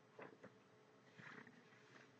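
Near silence with two faint, brief rustles of thin Bible pages being turned by hand.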